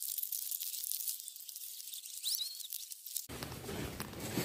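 Fast-forwarded recording played at very high speed: a thin, high-pitched crackly hiss with no low sound in it, and a brief chirping squeak about two and a half seconds in. Near the end the sped-up audio stops and normal, full-range sound returns.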